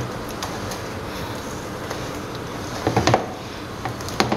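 Silicone whisk beating soft bread batter in a plastic bowl: a steady stirring with small ticks, and a couple of sharper knocks about three seconds in.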